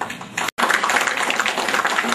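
Audience applauding after a song: dense, rapid clapping that starts about half a second in, after a brief cut in the sound.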